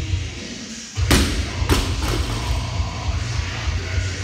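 Loaded barbell with bumper plates dropped from the shoulders onto rubber gym flooring: one heavy thud about a second in, then a smaller bounce about half a second later and a faint third one. Background music with a steady beat plays throughout.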